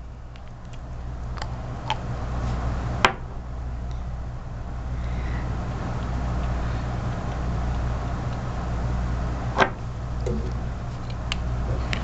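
A few small clicks and taps from handling nail-stamping gear: a metal image plate turned in its plastic holder, and a nail polish bottle and brush worked over the plate. The clearest clicks come about three seconds in and near the end, over a steady low background hum.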